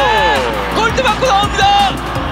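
Voices over background music, with a long falling tone around the start, just after a missed shot.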